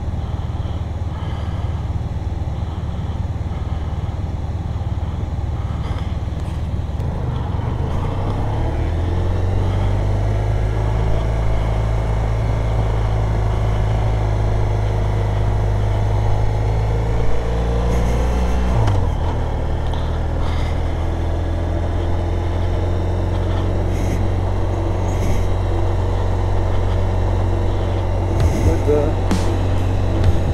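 Motorcycle engine running under way, heard with wind noise; its note climbs about a third of the way in and drops sharply a little past halfway.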